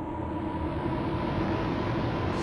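Cinematic sound-design rumble: a steady low noise with a faint hum, slowly growing louder as a build-up.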